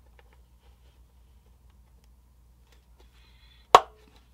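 A hobby knife with a No. 11 blade pressed straight down through a plastic quarter-round strip: a few faint ticks, then one sharp snap near the end as the blade cuts through.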